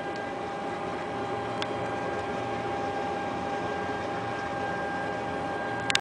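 Steady machinery hum with a thin, constant whine over it, and a single sharp click about one and a half seconds in.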